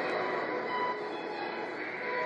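Soundtrack of a promotional video playing over a conference room's loudspeakers: music with sustained notes over a steady noisy wash.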